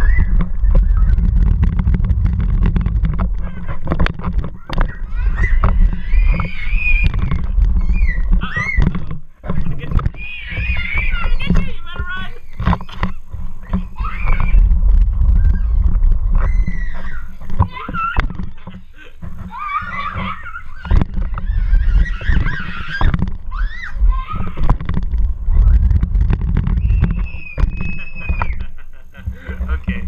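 Young children squealing and shrieking in high, gliding voices, again and again, over a loud steady low rumble.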